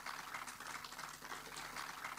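Faint, scattered clapping from an audience, heard as a dense, irregular patter of small claps.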